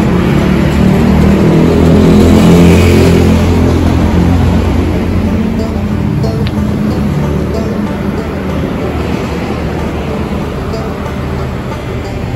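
Road traffic on a city street: vehicle engines running with a low hum, loudest about two to three seconds in and then gradually fading.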